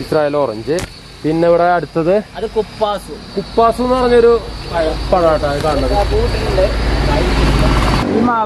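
People talking for the first five seconds, then a low rumbling noise builds and holds to the end, with no talking over it.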